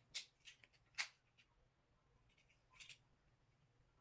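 Near silence broken by a few short clicks and taps of small plastic parts being handled: an adhesive towel hook and its backing. The loudest click comes about a second in, with a faint double click near the three-second mark.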